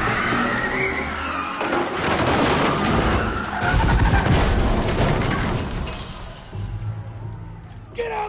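Film sound mix of a car crashing through a crowded hall: engine noise and skidding tyres over dramatic music, dying down near the end.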